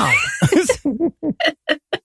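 Laughter: a quick run of short 'ha' bursts, spaced a little wider towards the end.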